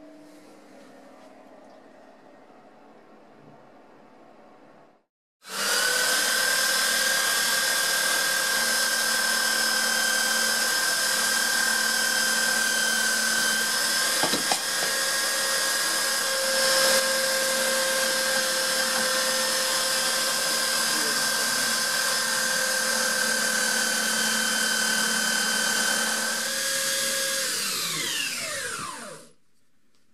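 Electric belt sander running at a steady, constant pitch for over twenty seconds, starting suddenly a few seconds in. Near the end it is switched off and winds down with a falling whine.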